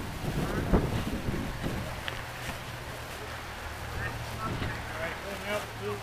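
Wind buffeting an outdoor microphone, with a thump about a second in and a faint steady low hum under it for the rest.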